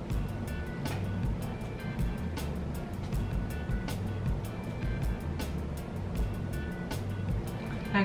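Background music with a steady beat and a low bass line.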